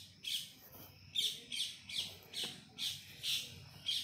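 Small bird chirping repeatedly in short, high chirps, about two to three a second.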